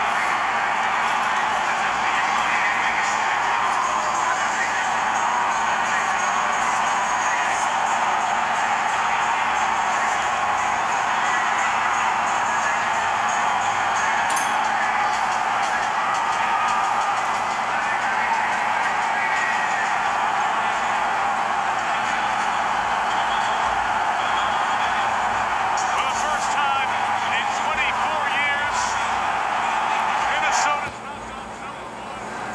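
A packed basketball arena crowd cheering steadily and loudly as fans storm the court, with music playing under the noise. Some high warbling whoops rise out of it near the end.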